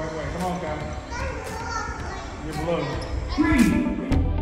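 Chatter of children's and adults' voices in a large indoor hall, no single speaker clear.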